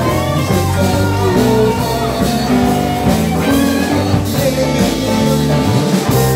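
Live band playing amplified music: two electric guitars, keyboard, bass guitar and drum kit, with sustained guitar notes over a moving bass line and steady drum hits.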